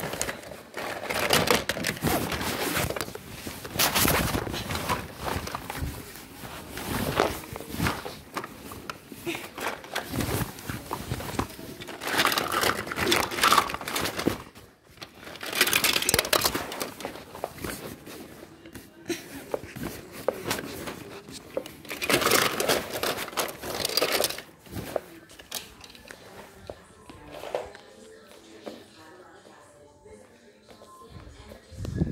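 Irregular bursts of rustling and rubbing against a covered phone microphone, fading to faint in the last few seconds.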